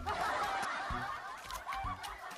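Many people laughing and snickering together, a dense chorus of overlapping laughs that starts abruptly, typical of a laugh-track sound effect.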